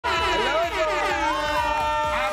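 Loud show-opening music sting with a held horn-like chord, starting abruptly, with excited voices whooping and cheering over it.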